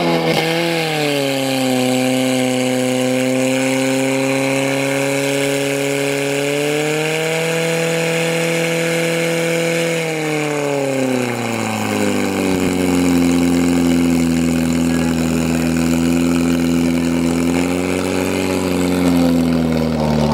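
A portable fire pump's engine running hard and steady. Its pitch rises about seven seconds in, drops back about ten seconds in, then winds down at the very end.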